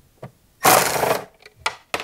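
Red Milwaukee cordless drill running in one short burst of about half a second, turning a screw on a trolling-motor mount, with a few light clicks around it.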